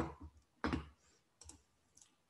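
Computer mouse clicks: several short, sharp clicks spread over two seconds.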